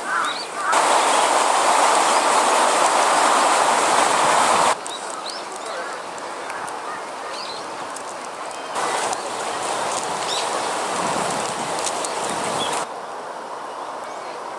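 Outdoor park ambience with faint, scattered small-bird chirps. A loud, even rushing noise starts suddenly about a second in and cuts off after about four seconds. A softer one runs from about nine seconds to near the end and also starts and stops abruptly.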